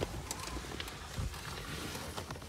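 Rustling and handling noise from a phone camera and a hand moving near the footwell of a car, with faint clicks and a soft low thump a little past a second in.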